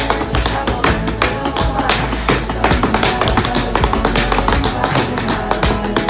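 Tap dancing: tap shoes striking a hardwood floor in quick, rhythmic runs of sharp taps, over recorded music with a steady beat.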